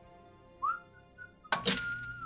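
A short rising whistle-like tone that levels off into a faint held note, then a sudden loud burst of noise with a high tone sounding through it.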